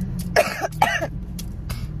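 A woman coughing twice, about half a second apart, the first about half a second in.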